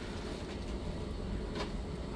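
Distant thunder rumbling low and steady, heard from inside the house.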